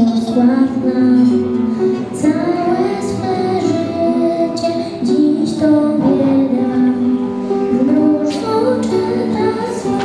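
A young girl singing a song into a microphone, accompanied by an acoustic guitar.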